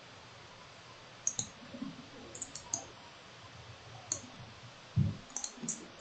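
Computer mouse clicking: about ten short, sharp clicks in small groups, some in quick pairs, over a quiet background.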